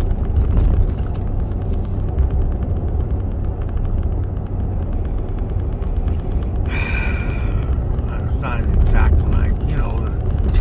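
Steady low rumble of a truck's engine and tyres on the road, heard from inside the cab while driving, with a brief higher-pitched sound about seven seconds in.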